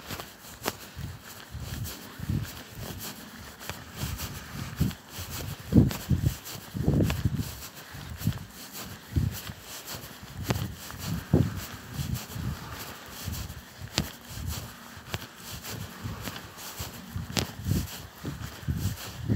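Footsteps of someone walking barefoot on grass: soft, irregular low thuds about once or twice a second, mixed with rustling and handling of the camera carried while walking. A few sharp clicks are scattered through it.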